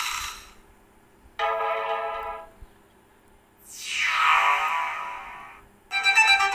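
Stock Android notification tones previewed one after another through a Lava Z2 smartphone's speaker, with short gaps between them. One dies away at the start, a pitched chime sounds about a second and a half in, a longer sweeping tone follows from about three and a half seconds, and another starts at the very end.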